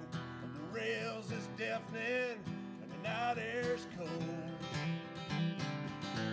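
Dreadnought acoustic guitar strummed in a steady rhythm, with a man's voice singing three short phrases over it.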